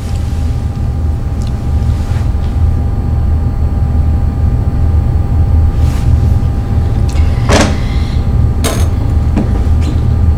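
Steady low background rumble with a faint steady whine over it, broken by a few brief soft noises in the second half.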